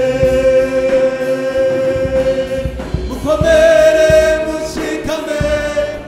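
Gospel choir of mostly men's voices singing through microphones, holding long notes in harmony, moving up to a higher chord about three seconds in.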